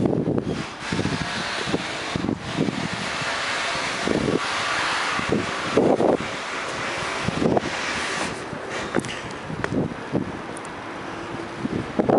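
Wind blowing across the camera microphone: a steady rushing noise with irregular low buffeting swells.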